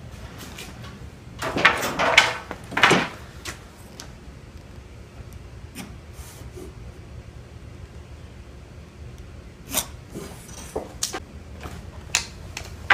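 Pencil marking the edge of a hollow-core door against a speed square for the hinge positions: three short scratchy strokes about one and a half to three seconds in, then light taps and rubs of the square and another stroke near the end.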